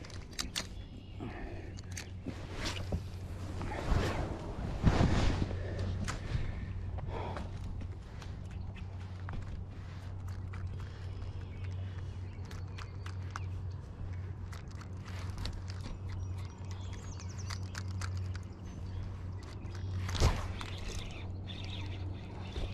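Spinning rod and reel being handled during casting and retrieving: scattered clicks and knocks, busiest in the first several seconds, over a steady low hum, with a sharper swish and knock about twenty seconds in.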